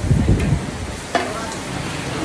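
Chicken pieces frying and sizzling in a large iron kadai over a wood fire, stirred and scraped with a long-handled metal spatula. There is a heavy scrape at the start and a sharp knock of the spatula against the pan a little over a second in.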